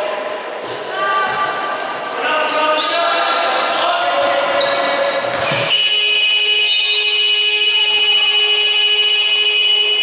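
Shoe squeaks and voices on the court, then about six seconds in the arena's end-of-period buzzer starts abruptly. It holds a steady electronic tone for about five seconds, marking the end of the second quarter as the last shot is in the air.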